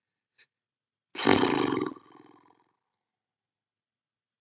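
A loud roar starting about a second in, at full strength for under a second and then tailing off.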